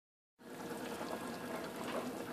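Pot of stewed chicken with potatoes and carrots simmering on low heat: a soft, steady bubbling with faint crackles, beginning about half a second in.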